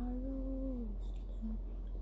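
A singing voice holds one note for about a second, sliding down at its end, followed by a short faint note, part of a children's song.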